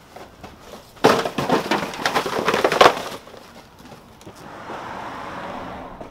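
Full plastic trash bags crinkling and rustling loudly for about two seconds as they are carried down stairs, then a softer rustle near the end.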